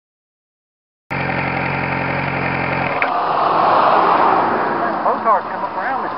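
Motorcycle engine idling steadily, starting suddenly about a second in. About two seconds later the steady note drops away into a rushing noise that swells, and voices start talking near the end.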